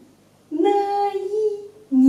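A woman's voice slowly sounding out the pinyin syllable nǐ for pronunciation practice, the vowel held as one long, fairly level note for over a second.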